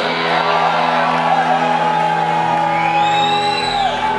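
Live band holding a sustained chord, with a voice over it holding one long whoop that grows brighter near the end and then falls away.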